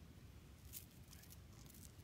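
Near silence with a few faint, short rustles and clicks in the second half, from hand and clothing movement.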